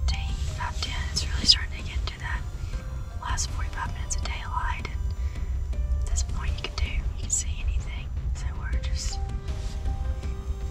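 Hushed whispered talk, with background music and a steady low rumble underneath.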